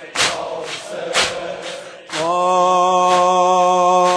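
Devotional chant-style music: beats about once a second under a chanting voice. About two seconds in, a single long steady note is taken up and held while the beat carries on faintly.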